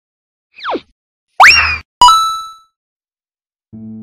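Cartoon-style sound effects laid over a title card: a quick falling pitch slide, then a louder rising boing, then a bell-like ding that rings out and fades. Music comes in just before the end.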